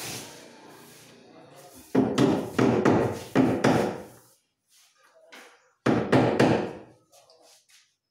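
Hammer blows on a plywood cabinet: a quick run of about five strikes, then two or three more about two seconds later.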